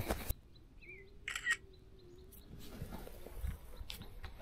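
Smartphone camera shutter sound: one short click about a second and a half in, as a photo is taken. A faint short chirp comes just before it.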